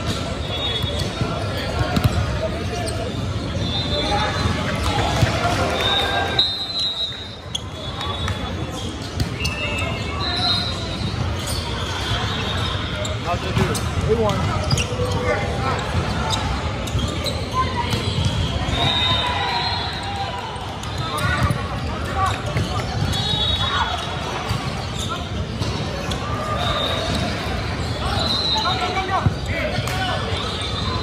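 Indoor volleyball play on a hardwood gym floor. The ball is bounced before a serve, then knocked about by hands and forearms in rallies. Sneakers squeak in short high chirps, and players and spectators talk throughout, all echoing in a large gym.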